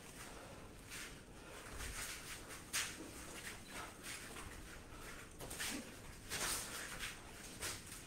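Quiet sparring sounds: scattered short scuffs and slaps as two Wing Chun fighters shift barefoot on a foam mat and trade hand strikes, arm against arm.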